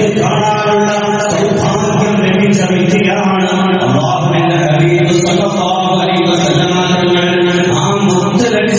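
A man's voice chanting religious recitation in long, held notes that shift slowly in pitch.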